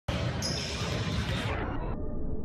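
Balls bouncing on a hard gym floor, with voices in the background.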